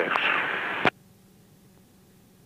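Aircraft VHF radio hiss at the tail of a transmission, cut off by the squelch with a sharp click about a second in. After that there is near silence with a faint low hum.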